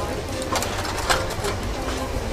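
Outdoor market ambience: background voices over a steady low mechanical hum, with a couple of short clatters.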